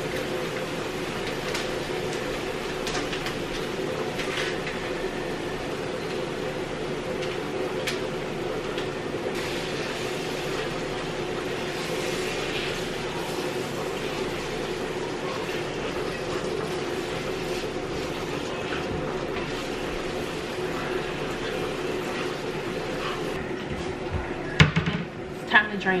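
Cooking at a stove: faint scraping and clicking from stirring ground meat in a frying pan over a steady low hum. A few sharp knocks near the end.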